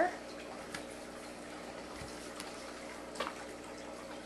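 Steady low room noise with a few faint light clicks and rustles as a paper card or sticker sheet is handled and laid on a table.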